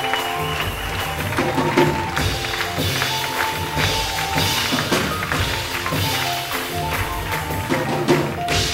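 Live jazz ensemble playing: piano and upright bass under frequent percussion strikes and jingling, with sustained ringing metal tones from a large brass bowl struck with a felt mallet.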